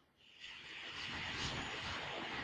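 A steady, rushing noise like a rumble or whoosh, with no clear pitch, fading in after half a second of silence.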